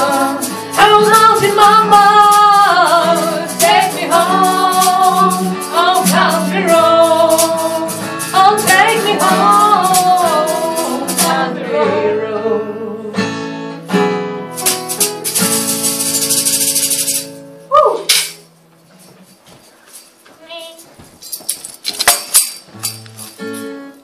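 Acoustic guitar strummed briskly under two women's voices singing the closing line of a country-folk song, the guitar then ringing out as the song ends. Near the end there is a brief burst of high hissing noise, then a short falling vocal slide before it goes quiet.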